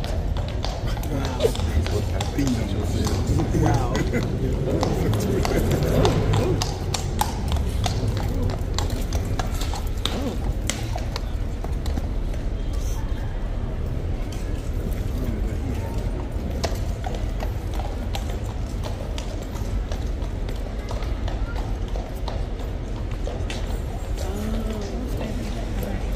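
A horse's hooves knocking and scraping irregularly on a hard surface, over the murmur of people talking.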